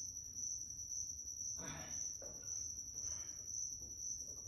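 A steady high-pitched whine, with a couple of faint brief noises about halfway through and again shortly after.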